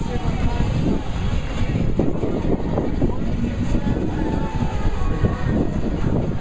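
Stadium crowd noise: many voices shouting and talking at once over a steady low rumble of wind on the microphone.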